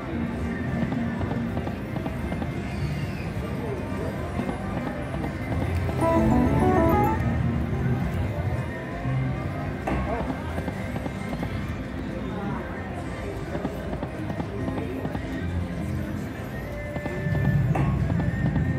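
Huff N Puff video slot machine playing its reel-spin sound effects and game music over casino background noise, with a short jingle about six seconds in.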